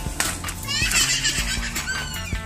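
A child's voice cries out about a second in, as a boy tumbles off a bicycle, over background music.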